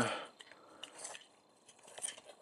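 Hard plastic action-figure parts clicking and rattling faintly in the hands as two halves of the figure are fitted back together.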